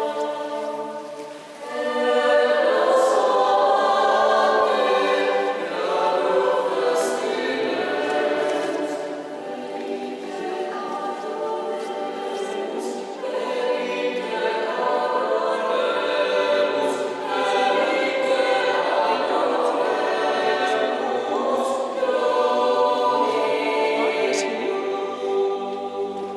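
Choir singing sustained chords in long phrases, with a short break between phrases about a second and a half in.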